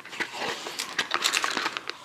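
A small box being opened and a plastic bag of cable adapters lifted out of it, with a run of small crackles, rustles and clicks.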